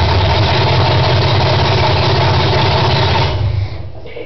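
350 small-block V8 running loudly and steadily on its first start after sitting dead for decades, then dying away about three and a half seconds in.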